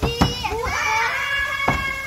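Children's voices calling out in long, drawn-out cries, with a hand banging twice on a door.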